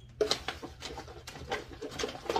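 Rummaging through a bag of empty product packaging: rustling and light knocks of containers, starting suddenly about a fifth of a second in. Short wordless vocal sounds come in between.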